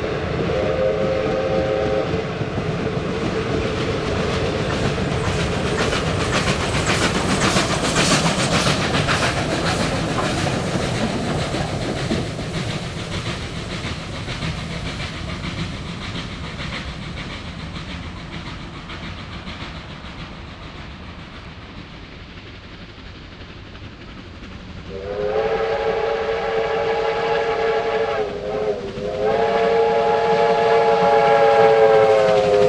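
A steam-hauled passenger train passing and receding: carriage wheels clicking over rail joints, swelling and then fading as the train draws away. A steam whistle gives a short chord-like blast at the start, then a long multi-tone blast about 25 seconds in, with a brief break near the end.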